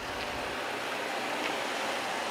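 A car driving along a street, a steady rush of tyre and road noise.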